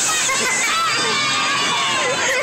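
Riders on a fairground ride, children among them, shouting and cheering over one another in many overlapping voices.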